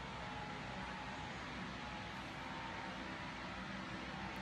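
Electric fan running steadily: an even rush of air with a faint hum.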